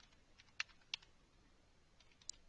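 A few faint keystrokes on a computer keyboard as code is typed, short separate clicks in the first second.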